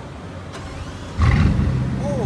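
Bugatti Chiron's quad-turbo W16 engine starting: it catches with a sudden loud onset a little over a second in and runs on at a steady idle.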